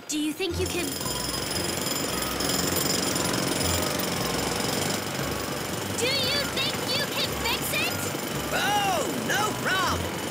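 Loud, continuous jackhammer pounding from street repair work, a cartoon construction sound effect that starts just after the beginning and keeps on without a break.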